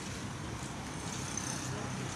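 Steady background noise of a town street, a low even hum of road traffic.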